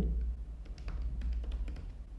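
Light, scattered clicks of a computer keyboard and mouse over a low steady hum.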